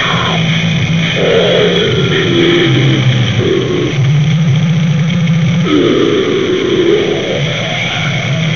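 Harsh, lo-fi noisecore demo recording: a distorted low riff that moves between a few notes every second or so, buried in a steady wash of noise. Bending mid-pitched sounds, like distorted growls, come in and out over it.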